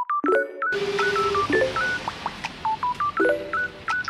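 A rapid run of short electronic beeps in phone-keypad tones, stepping between a few pitches like a little dialing tune. Steady background hiss comes in under a second in.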